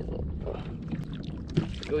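Steady low rumble of wind and water noise on the microphone aboard a small fishing kayak at sea, with a few light knocks in the second half. Brief talking at the start and end.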